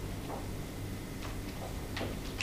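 Pages of a book being leafed through: a few faint paper flicks over a steady low hum.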